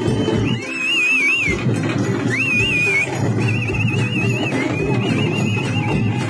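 Live festival drumming with a high, wavering melody line played over it in short phrases.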